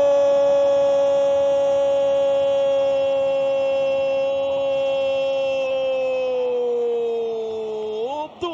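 Brazilian TV football commentator's long drawn-out "Gooool" cry calling a goal: one loud held note that sags slightly in pitch and fades a little near the end.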